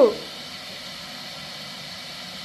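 A newborn baby crying: one wailing cry falls in pitch and breaks off just after the start, followed by a pause between cries with only a steady background hiss.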